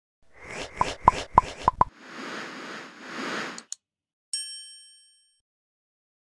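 Designed logo sound effect: five quick plops, then two rising and falling whooshes and a small click, ending in a bright bell-like ding that rings out and fades.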